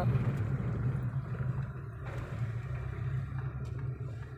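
Car engine and road noise heard from inside the cabin while driving: a steady low hum.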